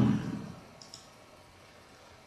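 A man's last spoken word dies away, then a single faint, short click just under a second in, over quiet room tone.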